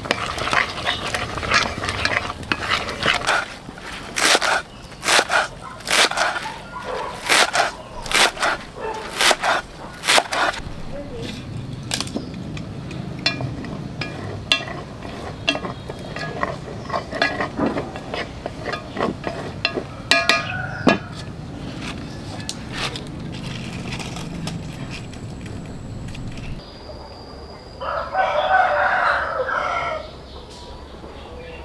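Kitchen knife chopping green onions on a thick wooden chopping board: a run of quick, uneven strikes for several seconds, then sparser knocks. A rooster crows near the end.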